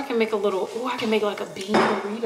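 Metal spoon scraping and clinking against a glass bowl as cooked rice is scooped out, with a person's voice over it.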